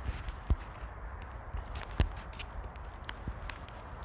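Scattered light knocks and clicks over a steady low hiss, the loudest about half a second in and again about two seconds in.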